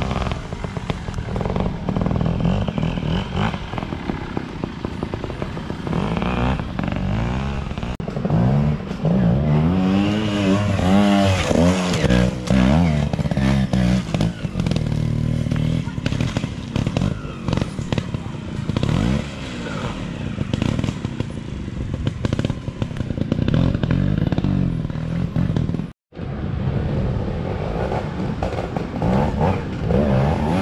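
Trials motorcycle engines revving and blipping as riders climb a steep, rooty bank, the pitch rising and falling in short pulls. The sound cuts out for an instant near the end.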